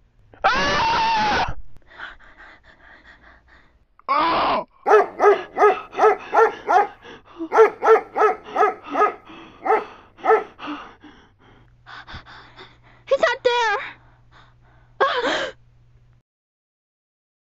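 A dog barking in a long, quick run of barks, about two or three a second, between a long scream near the start and two short wavering cries near the end.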